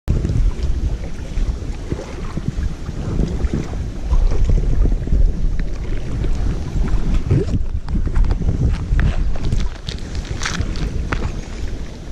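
Wind and handling noise buffeting a body-worn camera's microphone, with the angler's sleeve rubbing across it and scattered knocks and clicks.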